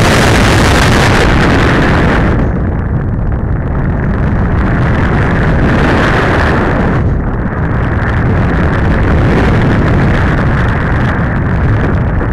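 Air rushing over the microphone of a camera mounted on a flying RC glider: a loud rushing noise with no motor tone. It eases about two seconds in, swells again around six seconds and eases just after seven.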